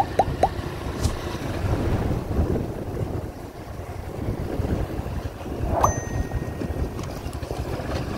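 Motorcycle engine running at low speed while riding along a street, with wind rumble on the microphone. About six seconds in there is a brief high-pitched tone.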